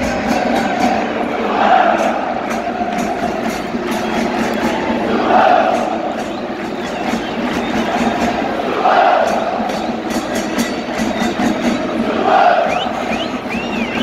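A large crowd of football supporters chanting in unison, the chant swelling about every three and a half seconds, over a steady run of sharp beats.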